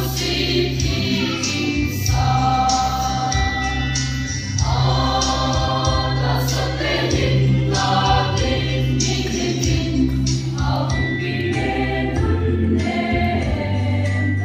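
Mixed choir of men and women singing a Christmas hymn together, sustained sung notes changing every second or so, over a steady low bass accompaniment.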